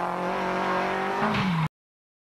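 Toyota Celica GT-Four ST165 rally car's turbocharged four-cylinder engine running hard under power at a steady pitch, with a brief change in note near the end. The sound cuts off suddenly a little before the end.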